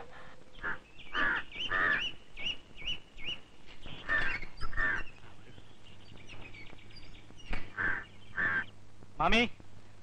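Birds calling: a run of short, high chirps about twice a second, with lower, honking calls among them at intervals.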